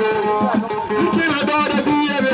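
A man singing through a handheld microphone and loudspeaker, over instrumental music with a steady percussive beat.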